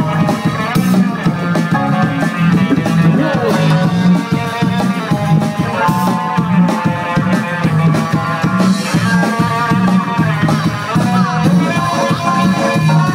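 Live band playing drum and bass: drum kit beat, a repeating low bass line, and electric guitar lines, with no vocals.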